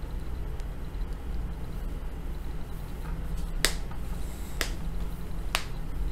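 Three sharp clicks about a second apart, over a steady low hum.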